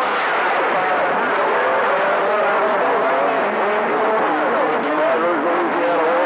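CB radio receiver on channel 28 (27.285 MHz) with the channel open after unkeying. It gives a steady, loud jumble of several overlapping, garbled stations, their voices and tones wavering in pitch.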